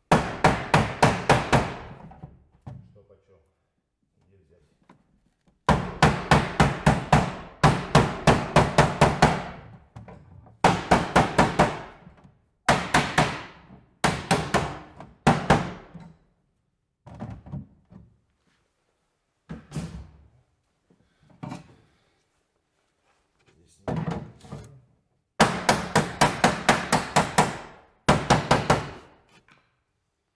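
A mallet striking a coated sheet-steel roofing panel in quick runs of blows, about five a second, with short pauses between the runs: the metal being hammered over to fold the standing-seam flashing around a chimney.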